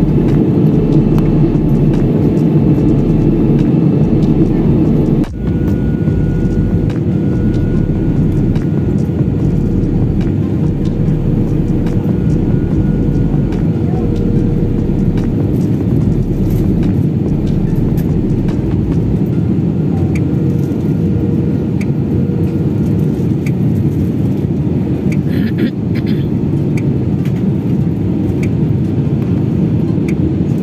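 Steady in-flight drone inside the cabin of an Airbus A320-family airliner: jet engine and airflow noise heard at a window seat. The loudness dips briefly about five seconds in.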